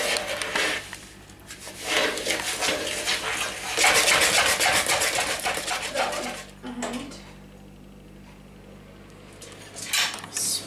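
A spoon stirring and scraping cake batter in a plastic mixing bowl in rapid, even strokes, stopping about seven seconds in.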